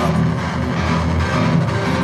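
Live rock band playing at full, steady volume, with electric guitar and drums, between sung lines.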